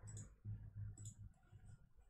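A few faint computer mouse clicks, spread over about two seconds.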